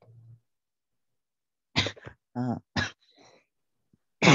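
A person's voice: after more than a second of quiet, a few short vocal sounds come in quick succession, about two seconds in.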